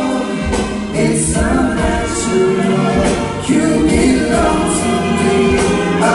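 Live concert music: male voices singing in harmony over a band, recorded from among the audience in a large hall.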